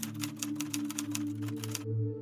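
Typewriter typing sound effect: a quick run of key clicks, about eight a second, that stops shortly before the end, over a steady ambient music drone.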